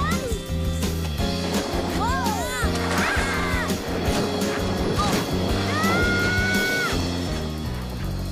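Orchestral film score with cartoon sound effects: repeated sharp hits and a characters' wordless shouts and cries that rise and fall in pitch, the longest held cry near the end.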